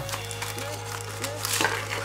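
Soft background music holding a steady low note, under light rustling and handling of a cardboard box insert as the box is opened.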